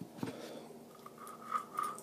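Faint handling of metal weed-eater parts, a clutch drum sliding on its drive shaft: two light clicks near the start, then soft scraping.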